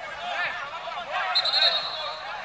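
Spectators' overlapping chatter, with a short trilled whistle blast about one and a half seconds in.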